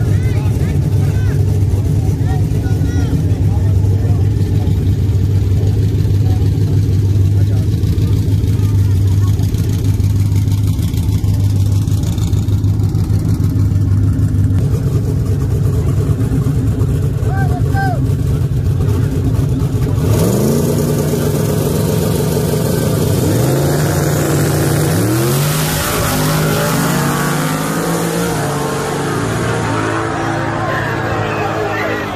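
Loud race engines of a twin-turbo Ford F-150 and a no-prep drag car, running with a steady low drone for about twenty seconds. They then rev and accelerate hard, their pitch climbing in several rising sweeps as they launch and pull away, with crowd voices over them.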